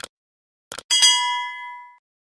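End-screen sound effects: a few short clicks, then a bright metallic ding about a second in that rings on several clear tones and fades over about a second.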